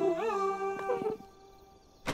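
A cartoon pet's drawn-out cry, about a second long, wavering in pitch, over soft background music.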